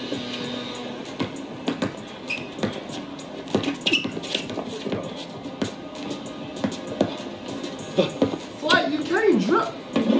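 Background music with a basketball bouncing on an outdoor court in sharp, irregular knocks. A man's voice is heard near the end.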